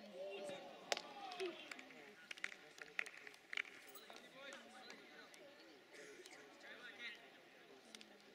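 Faint, distant shouting voices of footballers and onlookers at an outdoor match, with a few sharp knocks. The loudest knock comes about a second in.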